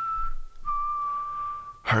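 A single high, steady, whistle-like tone held from a film soundtrack. It breaks off briefly about half a second in, then returns a little lower and holds until a voice comes in near the end.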